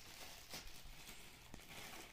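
Near silence: room tone with a couple of faint clicks from handling the unpacked heater and its cord.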